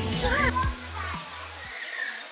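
Children's voices chattering in a crowd over background music. The voices are loudest at the start, and the music's bass fades out and stops just before the end, leaving quieter crowd murmur.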